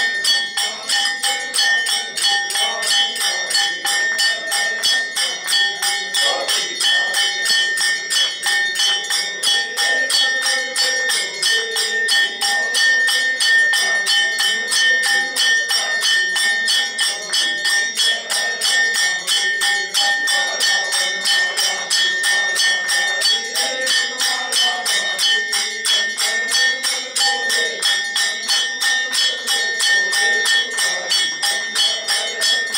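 Hand-held brass plate gong struck with a mallet several times a second, its ringing tones held steady throughout, with devotional singing beneath it.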